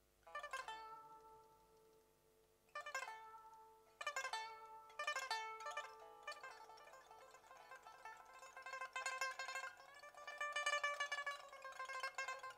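Pipa played solo in an instrumental interlude: a few separate plucked strokes, each left to ring and fade, then quicker playing that runs into held tremolo notes near the end.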